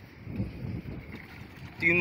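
Faint outdoor wind and water around a wooden fishing boat, an even low hiss with no distinct event; a man's voice starts near the end.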